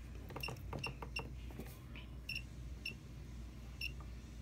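Several short, high-pitched ticks at irregular intervals as the frequency control of a function generator is turned, over a steady low hum.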